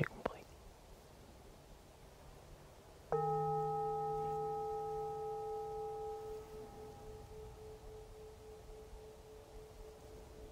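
Hand-held metal singing bowl struck once about three seconds in, ringing with a few steady overlapping tones that slowly fade.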